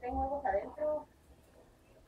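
A person's voice: a few short vocal sounds in the first second, then quiet room tone.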